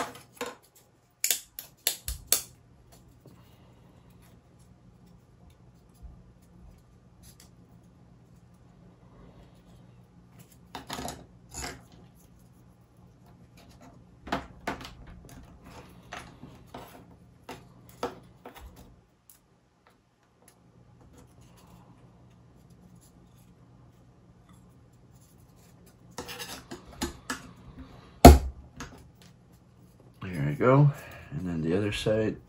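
Wooden model-kit parts being handled and pressed together: scattered clicks, taps and light scrapes of wood on wood in small clusters, the loudest knock near the end, over a faint steady low hum.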